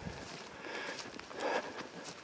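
Faint footsteps and rustling as a person walks over grass and brush, a few soft steps.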